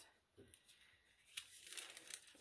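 Near silence with faint rustling of tissue paper being folded over a sheet of cardstock, and a small click about a second and a half in.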